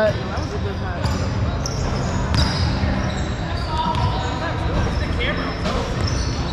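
Knocks and thuds on a hardwood gym court during a volleyball game, over a steady low rumble, with other players' voices faintly in the background.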